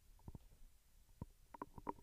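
Near silence, with a few faint short clicks scattered through it, several in a quick cluster near the end.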